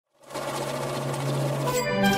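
Electronic logo-intro sound effect: a dense, buzzing swell over a low steady hum that turns into a clear ringing chord near the end.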